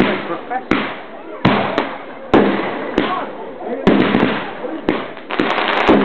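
Fireworks bursting in quick succession: about ten sharp bangs over six seconds, each with a fading rumble. Near the end comes a rapid cluster of crackles.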